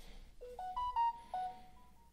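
Samsung Galaxy S10 Plus notification tone: a short electronic chime of about six clear notes that step up in pitch, dip and rise again, lasting about a second and a half.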